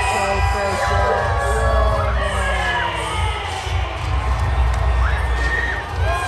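Arena crowd cheering and screaming over loud wrestling entrance music with heavy bass.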